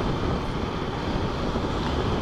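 Motorcycle cruising steadily on a paved road, its engine running under a steady rush of wind over the microphone.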